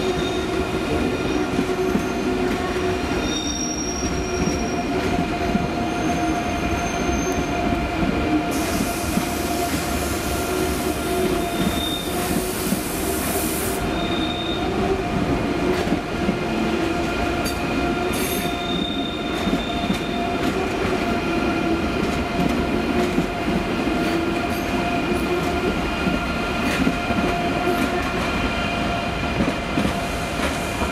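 Electric passenger trains moving slowly over station pointwork: a steady electric whine with the rumble of running gear, and a few brief high wheel squeals. A hiss comes in about eight seconds in and stops about six seconds later.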